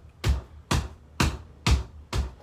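A bare foot tapping the whole sole flat on a wooden plank floor, four even thuds about two a second, as part of a count of nine taps.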